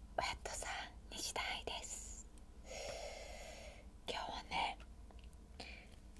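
A woman whispering close to the microphone in short breathy phrases, with one longer held breathy sound about halfway through.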